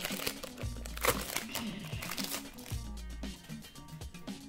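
Foil trading-card booster pack wrapper crinkling as it is handled and opened, over background music with a recurring low bass note.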